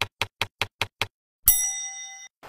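An edited-in sound effect: six quick ticks, about five a second, then a bright bell-like ding about one and a half seconds in that rings and fades.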